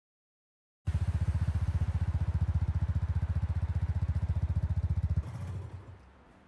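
Motorcycle engine idling: a loud, low, rapid even pulsing that starts suddenly about a second in, holds steady, then cuts off about five seconds in and dies away.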